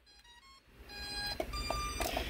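Electronic speed controllers in an RC submarine's drive cylinder sounding their startup tones as they power up, confirming they are armed and receiving the transmitter's signal. A few faint short tones come first, then louder steady tones from about a second in.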